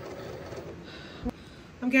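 Cricut Explore Air 2 feed rollers drawing the cutting mat in, a steady small-motor whir that stops with a short knock about a second in.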